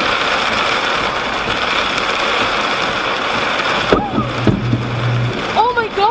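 Heavy rain on a car in a thunderstorm: a loud, steady hiss that breaks off suddenly with a sharp crack about four seconds in. A brief low hum and a person's excited voice follow near the end.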